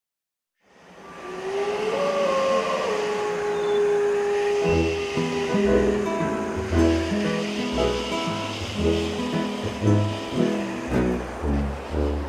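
Instrumental intro music of a children's song, fading in from silence about a second in. A held note slides up early on, and a rhythmic bass line joins about halfway through.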